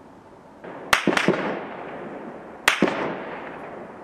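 Sharp blasts echoing across a valley: a quick run of about three a second in, then two more near three seconds in, each trailing off in a long reverberating rumble.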